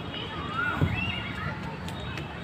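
High-pitched voice calls that glide up and down, one about half a second in and another about a second in, over steady outdoor background noise.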